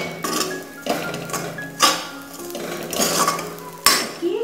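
A steel spoon scraping and clanking against a metal wok while stirring dry grains in it, with four sharp strokes about a second apart.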